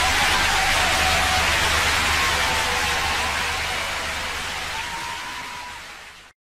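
Studio audience applauding, steady at first and then fading out over the last few seconds.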